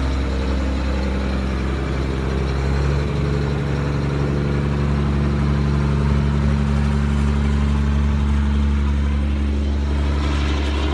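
A large engine idling steadily, its tone shifting slightly about three seconds in.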